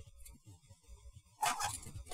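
Plastic model-kit runners (sprues) being handled and set down onto a pile of other runners, with a short plastic rustle and clatter about one and a half seconds in.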